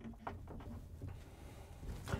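Faint light clicks and rubbing as a braided stainless steel water supply line's nut is threaded by hand onto a brass fitting.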